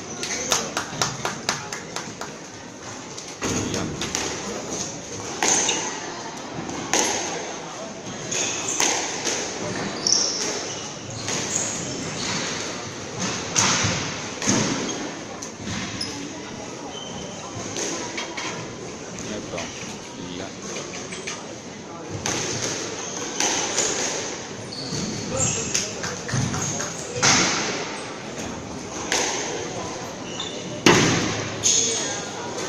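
Squash ball being struck by rackets and smacking off the court walls in rallies, sharp echoing hits in a large hall, with a lull of a few seconds around the middle before play picks up again.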